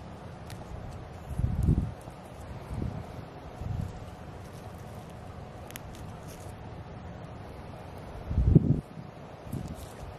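Wind buffeting the microphone in two low rumbling gusts, about a second and a half in and again near the end, over a steady outdoor hiss. Basil leaves rustle faintly as a hand handles and pinches the plants.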